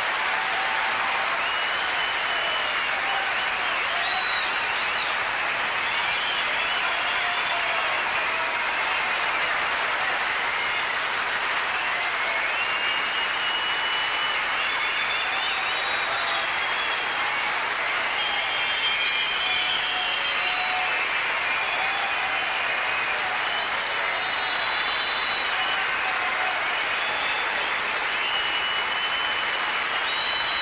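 Large concert audience applauding steadily, with short high whistles scattered through the clapping.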